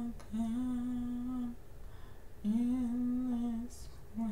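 A woman humming slowly to herself in long held notes, about a second each, with short gaps between. A brief hiss comes near the end.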